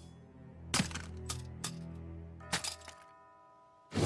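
Anime episode soundtrack: a low sustained music drone under a run of sharp cracks, about six in two seconds, then a held chord that fades to near silence shortly before the end.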